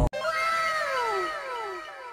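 A short sound effect of several overlapping pitched tones, each gliding steadily downward, starting one after another about every half second and fading away.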